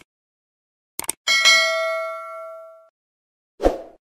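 Subscribe-button animation sound effect: two quick clicks, then a single bright bell ding that rings out for about a second and a half. A short burst of sound follows near the end.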